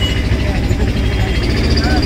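Steady low rumble of a vehicle's engine and road noise, heard from inside the moving vehicle.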